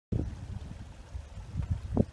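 Wind buffeting the microphone, an uneven low rumble, with one short knock at the very end.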